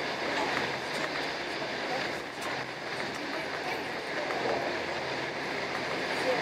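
Steady running noise of a moving passenger train heard from inside the carriage, with a few faint clicks from the track.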